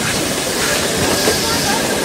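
Steam locomotive 60163 Tornado, a BR A1 class 4-6-2, heard at close range alongside its driving wheels: a loud, steady hiss and rush of steam.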